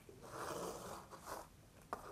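A small clear plastic display box handled in the fingers: a soft scraping rustle lasting about a second, a brief second rasp, and a faint click near the end.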